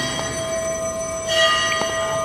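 A sustained ringing chord of several steady high tones, like an edited-in sound effect. The upper tones swell louder about a second and a half in.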